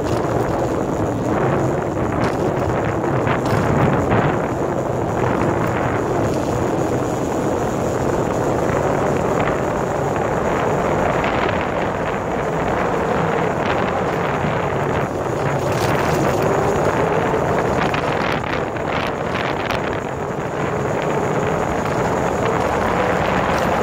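Motorcycle engine running while riding at speed, mixed with wind rushing over the microphone.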